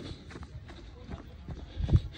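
A runner's footsteps on a dirt trail, in a steady running rhythm, with a stronger low thump near the end.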